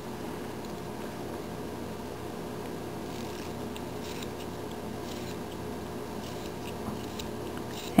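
Faint scraping of a carving knife shaving thin cuts from a small wooden figure, several short strokes in the second half, over a steady low hum.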